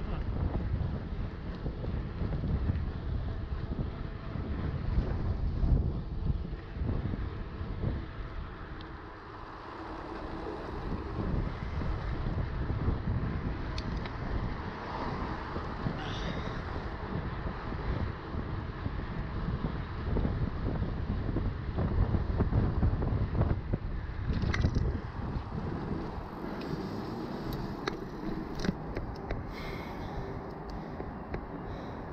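Wind buffeting the action camera's microphone while cycling, with the rumble of the mountain bike's tyres on pavement rising and falling. A few sharp clicks come near the end.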